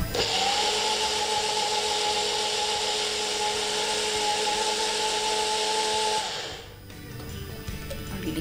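Small personal blender's motor running at steady speed for about six seconds, blending frozen banana chunks with coconut milk into a smoothie, then switched off and winding down.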